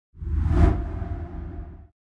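Logo-reveal whoosh sound effect with a deep rumble under it. It swells in quickly, peaks about half a second in and fades away.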